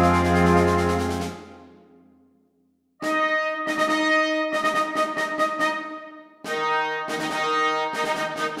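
Symphonic band overture played back by notation software (NotePerformer): a loud held chord over a low bass note releases a little over a second in and dies away into silence. About three seconds in the band comes back with short, repeated chords, breaks off briefly past the six-second mark, and starts again.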